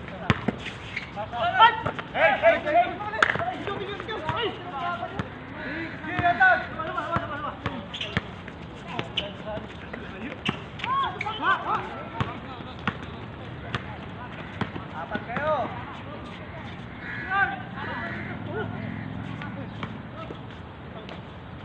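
Basketball bouncing on a hard court, heard as scattered sharp knocks, with players' voices calling out and shouting during play.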